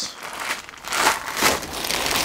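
Plastic packaging crinkling and rustling unevenly as hands handle a zip bag of nuts and washers and the bubble wrap in the kit box.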